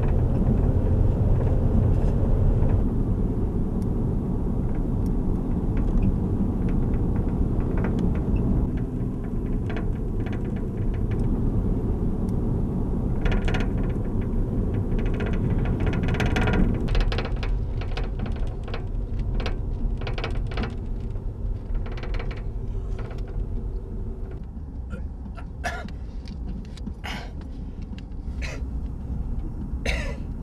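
Steady road and engine rumble inside a moving car's cabin, louder in the first half, with scattered clicks and knocks in the second half.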